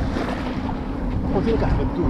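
Wind buffeting the microphone over small waves washing onto a sandy shore, with a steady low hum underneath.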